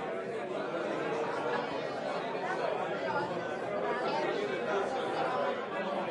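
Many people talking at once: steady, indistinct party chatter with no single voice standing out.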